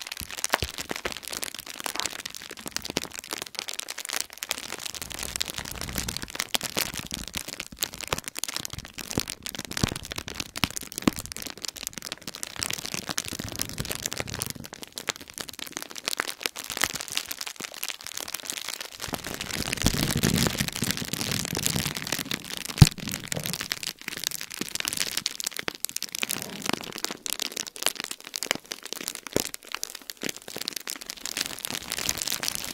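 Large bubble wrap squeezed and kneaded by hand close to the microphones: a dense, continuous crackle of plastic. The rustling grows fuller for a couple of seconds about two-thirds of the way in, and one sharp crack stands out just after.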